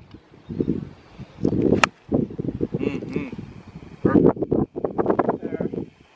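Golf iron striking a ball off the tee: one sharp click about two seconds in, with low voices around it.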